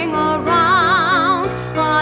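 A woman singing a musical-theatre ballad, holding two long notes with a wide, even vibrato over a sustained instrumental accompaniment.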